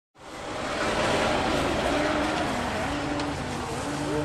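Steady outdoor street-festival background noise, a broad rush with faint wavering voices in it, coming in quickly just after the start.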